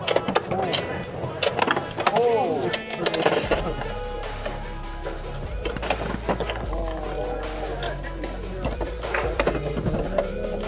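Two Beyblade X spinning tops whirring and clacking against each other and the plastic stadium, with many sharp clicks from their collisions. Music and background voices run underneath.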